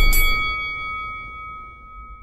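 Logo-reveal sound effect in an intro sting: a bright, bell-like metallic chime rings out and slowly fades over the dying low rumble of a deep boom.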